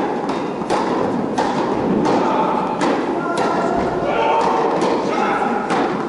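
Tennis rally on an indoor hard court: a string of sharp hits of rackets striking the ball and the ball bouncing, spaced about half a second to a second and a half apart. Voices are heard between the hits.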